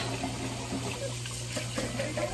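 Kitchen tap running, a steady rush of water, over a low steady hum.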